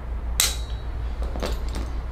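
Handheld chiropractic adjusting instrument firing against the atlas vertebra below the ear: one sharp click with a brief metallic ring, followed about a second later by two fainter clicks.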